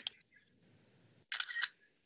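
Near silence on a video call, broken a little over a second in by one short, sharp hiss-like click lasting under half a second.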